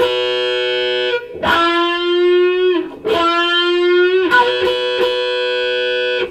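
Electric guitar played through a wah-wah pedal: a held note, then two wide bends that each slide up in pitch and ring for about a second and a half, then another held note near the end. The wah is opened on the bends and closed on the held notes.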